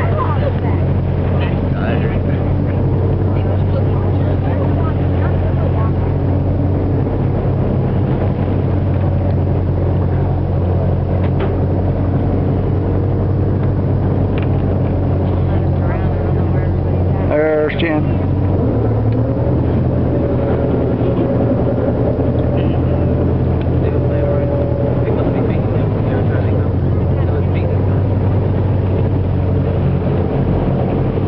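Tour boat's engine running steadily with a low, even drone; its tone shifts slightly a little past halfway.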